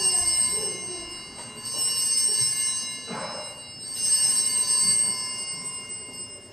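Altar bells rung three times, about two seconds apart, each ring a cluster of high sustained tones that carry on between strikes, in keeping with the bells rung at the elevation during the consecration.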